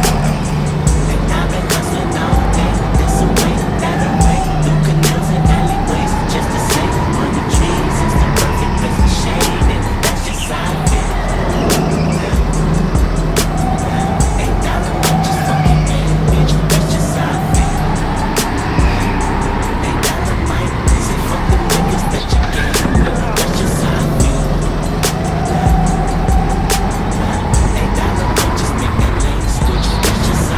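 A go-kart running on the track, its pitch rising and falling again and again as it speeds up out of the corners and slows into them, with music playing over it.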